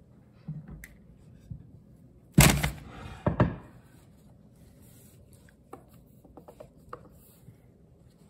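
Two sharp clattering knocks of a small hard object on the kitchen countertop, a little under a second apart, then a few faint light ticks.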